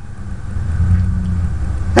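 Low steady engine-like rumble, swelling over the first second and then holding.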